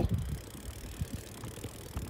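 Bicycle rolling on a paved highway, with a low wind rumble on the microphone from a headwind and a few faint clicks from the bike.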